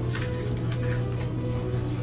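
Soft background music with a steady low drone, and faint clicks of tarot cards being handled.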